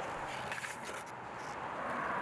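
Surfskate wheels rolling over concrete paving stones, a steady rolling noise with a few faint clicks, with road traffic passing behind.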